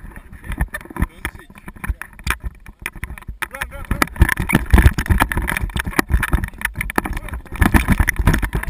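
Wind buffeting a camera microphone held close to a paragliding passenger, mixed with rustling and knocking of clothing and harness during a running takeoff on snow. The gusty rumble is loudest about halfway through, as the glider lifts off.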